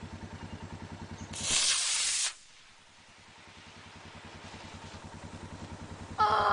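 Solid-fuel model rocket motor firing at lift-off: a loud rushing hiss starting just over a second in, lasting about a second and cutting off sharply. An engine idles under it with a steady low throb, which drops away after the burn and gradually comes back.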